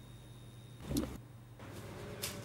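Quiet room tone over a courtroom audio feed: a steady low electrical hum with a faint high whine, and one brief sound about a second in.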